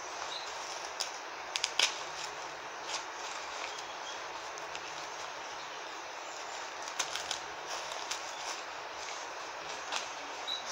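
Steady background hiss with a few short clicks and rustles, clustered near the start and again about seven seconds in: artificial flower stems being handled and pushed into a floral foam ring.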